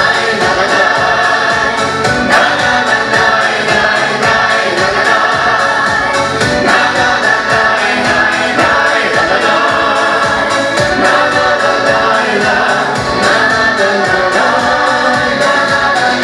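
A mixed Ukrainian vocal ensemble of men and women singing a song together in chorus into microphones, amplified over the stage sound system.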